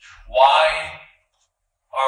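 A man preaching: one short spoken phrase, then about a second of dead silence before his voice comes back at the end.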